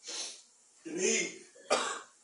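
A man coughing and clearing his throat in three short bursts, the last a sharp cough near the end.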